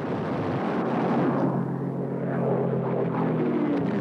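A propeller aircraft's piston engine drones over a rushing noise, its steady pitched hum coming in about a second and a half in and fading just before the end.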